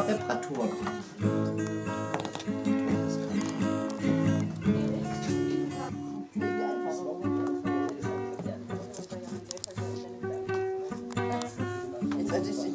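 Guitar music: a steady run of held notes and chords.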